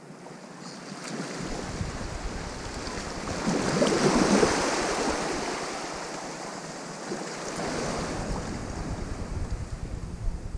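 Small waves washing up onto a sandy shore, swelling to a peak about four seconds in and again near eight seconds, with wind noise on the microphone.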